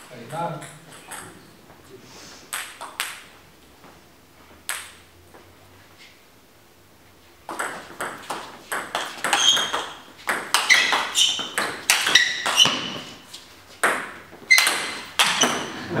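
Table tennis rally: the ball clicking sharply off the bats and the table, back and forth in quick succession. It starts about halfway in after a few isolated taps and lasts about eight seconds.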